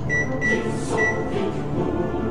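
Three short high beeps from the push-button control panel of an Electrolux kitchen appliance as its buttons are pressed, over background music.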